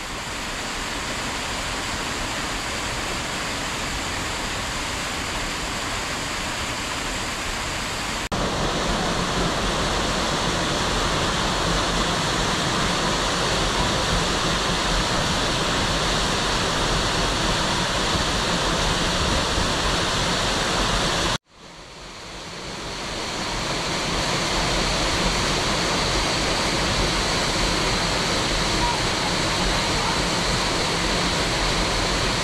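Steady rushing roar of a waterfall, becoming a little louder about eight seconds in. About two-thirds of the way through it cuts out abruptly and fades back in over a couple of seconds.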